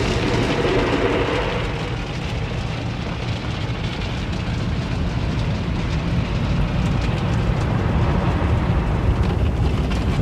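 Automatic tunnel car wash scrubbing the car with soapy cloth wraps across the windshield, roof and side windows, heard from inside the cabin: a loud, steady wash of brushing and spraying noise.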